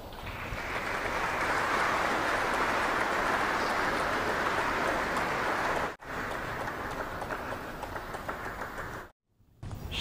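Audience applauding, swelling over the first second or so and then holding steady. A sudden break about six seconds in, after which the applause goes on more quietly and stops shortly before the end.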